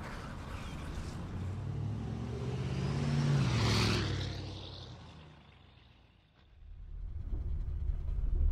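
Sound effect of a getaway van's engine speeding past and fading into the distance, its pitch dropping as it goes by. A low rumble builds up again near the end.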